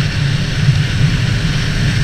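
Honda CB650F's inline-four engine running steadily while the bike is ridden on the road, with wind rushing over the camera microphone.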